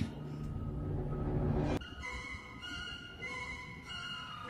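Background music of long held notes changing every second or so, with a low rumble underneath that stops suddenly a little under two seconds in.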